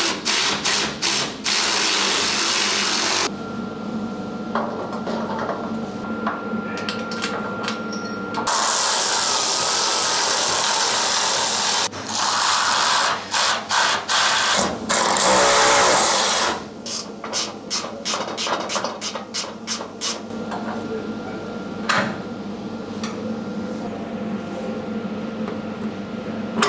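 Milwaukee cordless electric ratchet driving bolts on bonnet strut brackets, running in runs of a few seconds and shorter spurts. Sharp clicks and knocks of hand tools on the metal come between, most often in the second half.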